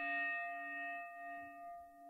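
The fading ring of a single struck bell-like chime, a tone with several steady overtones dying away slowly. It is a transition chime marking the break in the podcast.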